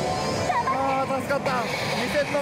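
A pachislot machine's high-pitched character voice and sound effects, starting about half a second in, as the machine goes into its 'SG RUSH' bonus. Under it runs the steady din of a pachinko parlor.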